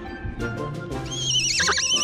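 Pony foal whinnying: a high, quavering neigh that starts about halfway through and is the loudest sound, over background music.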